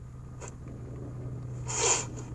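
A tearful woman's sharp intake of breath, a short rasping sniff, near the end, over a steady low hum. It is heard as played back through a laptop's speakers.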